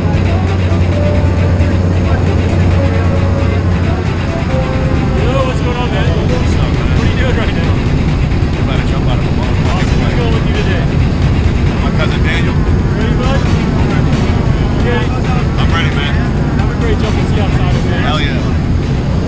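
Background music over the steady low drone of a propeller plane's engine heard inside the cabin during the climb, with indistinct voices.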